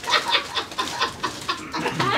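People laughing in quick, repeated bursts, the reaction to a very spicy chip.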